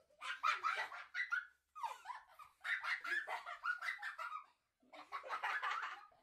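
Children laughing and giggling excitedly, in three bursts with short gaps between them.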